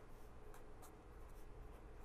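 Faint scratching of a marker pen writing on paper, in a few short strokes, over a low steady room hum.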